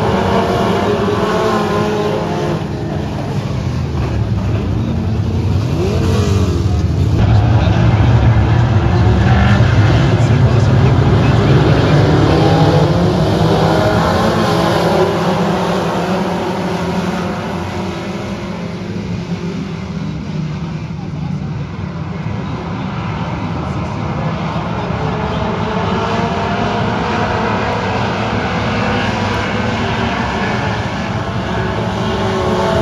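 A field of dirt-track race car engines running as the pack circulates and passes by. The sound grows louder in the first third and peaks around the middle, with revs rising and falling, then eases off.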